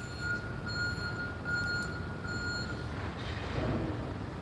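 An electronic alarm beeping at one steady pitch, a beep about every three quarters of a second, stopping about three seconds in, over a low rumble.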